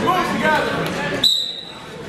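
Referee's whistle blown once, a short steady high tone starting just over a second in, signalling the wrestlers to start from referee's position. Crowd voices and shouts come before it.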